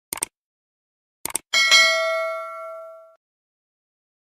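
Subscribe-button animation sound effect: a quick double click at the start and another about a second later, then a bright notification bell ding that rings out and fades over about a second and a half.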